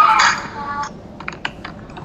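A short drawn-out voice sound, then a quick run of about five light clicks, close together.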